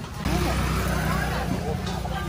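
A motor vehicle engine running close by, a steady low hum that comes in about a quarter second in, under talking voices.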